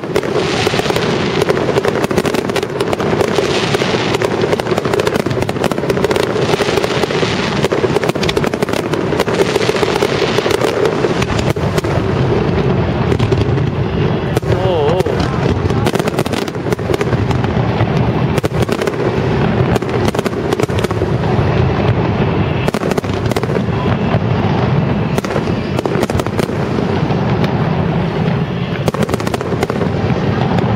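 Aerial firework shells bursting in rapid succession: a dense, continuous barrage of bangs with no pause.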